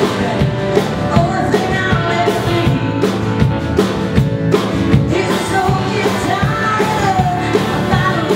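Live band playing a rock song: a woman sings the lead melody over strummed acoustic guitar and a drum kit keeping a steady beat.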